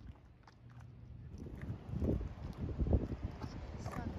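Footsteps of someone walking on a sandy path, low thuds about two a second that begin about a second in and grow louder.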